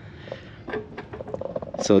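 Quiet background with a few faint, short clicks of handling noise, then a man's voice starting near the end.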